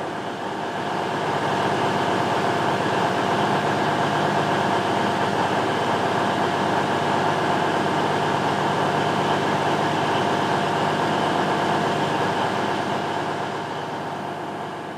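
A steady mechanical hum with a few held tones, level and unchanging, easing off near the end.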